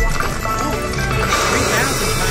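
Everi Wicked Wheel Fire Phoenix slot machine playing its bonus-wheel spin sound: rapid electronic ticking as the wheel turns, over the game's music, with the wheel landing on its result near the end.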